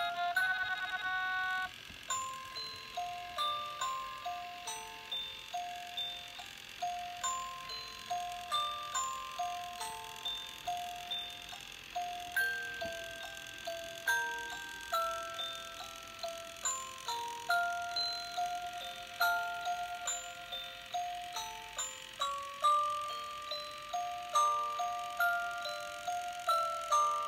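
Tinny electronic chime melody of a Christmas tune playing from a light-up musical Christmas village ornament, single struck notes each ringing and fading at about two a second. A fuller passage breaks off about two seconds in and a new tune begins.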